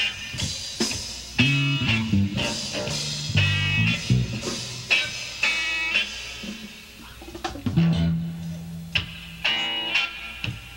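Instrumental passage of a free-form art/noise rock band: guitar, bass and drums playing in short, irregular stabs and bursts rather than a steady groove.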